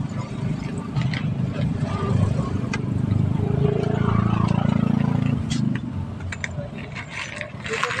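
A man's voice mumbling indistinctly while he eats, with no clear words.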